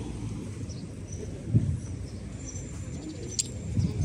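Outdoor background noise: a steady low rumble, with a short low sound about a second and a half in, a faint thin high whistle and a sharp click near the end.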